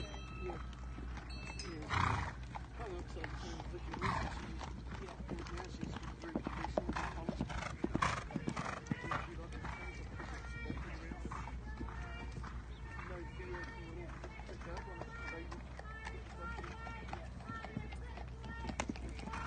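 Hoofbeats of a horse cantering on an arena's sand footing and jumping fences: a run of soft thuds, with louder ones about two and eight seconds in.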